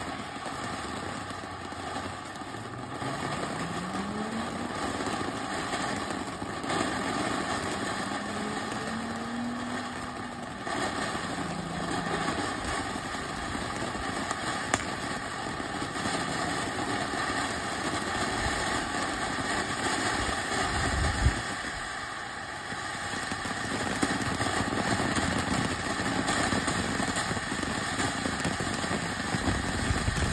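TNT Global Lights firework fountain burning: a steady rushing hiss from its spray of sparks and flame. A louder thump comes about two-thirds of the way through.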